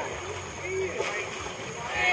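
Quiet, indistinct voices of people talking a short way off, with a thin steady high tone in the background.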